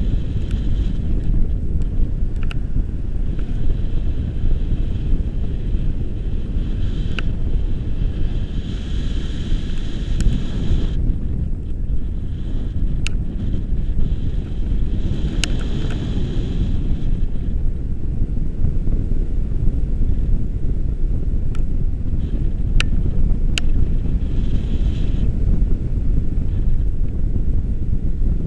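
Wind buffeting the microphone of a pole-mounted action camera on a tandem paraglider in flight: a loud, steady low rumble with stretches of higher hiss and a few sharp ticks.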